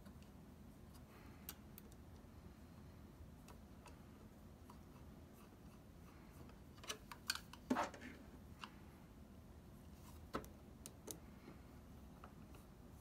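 A Phillips screwdriver driving small screws into a metal hard-drive caddy: faint handling noise with a few sharp metallic clicks, the loudest cluster about seven to eight seconds in and two more single clicks near the end.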